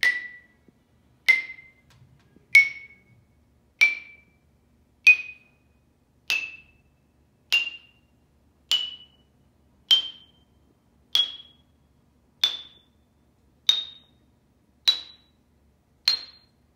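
Deagan No. 262 Artists' Special xylophone, Honduran rosewood bars over brass resonators, struck one bar at a time with a single mallet. Each note rings briefly and dies away, and the notes climb steadily step by step, about one every second and a quarter, rising through roughly an octave to the top of the instrument.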